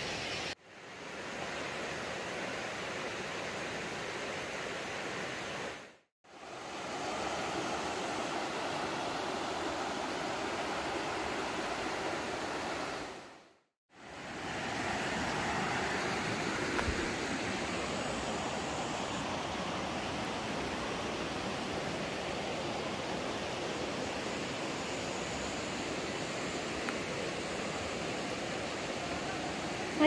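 Steady rushing of river water, an even hiss with no clear strokes. It comes in three stretches separated by brief drops to silence.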